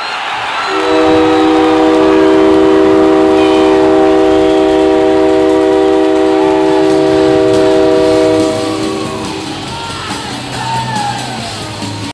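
Hockey arena goal horn sounding one long multi-tone chord, celebrating a goal. It cuts off after about eight seconds, leaving the crowd cheering.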